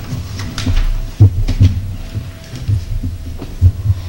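Irregular low thumps and a few short knocks, about a dozen in four seconds, over a faint steady hum.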